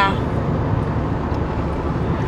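Steady low rumble of a car's road and engine noise, heard inside the cabin while driving.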